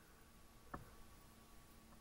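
Near silence: a faint steady hum from the MakerBot Method X 3D printer running while it purges test filament, with one faint click about three quarters of a second in.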